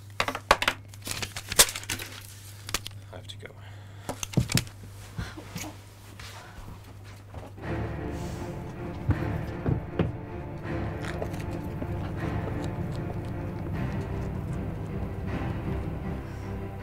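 A run of sharp knocks and thuds over a low steady hum, then background music comes in about halfway through and carries on.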